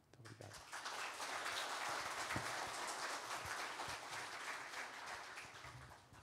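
Audience applauding, starting about a second in and tapering off near the end.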